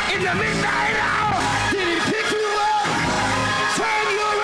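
Gospel praise-break music slowed down and pitched low in chopped-and-screwed style, with a man's lead vocal over the choir and band.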